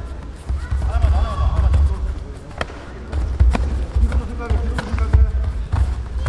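Taekwondo sparring on a foam mat: the fighters' bouncing footwork thuds on the mat, with several sharp smacks of kicks and contact, while voices shout in the hall.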